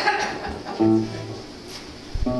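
Electric guitar opening the song: a chord struck about a second in, ringing and then fading away.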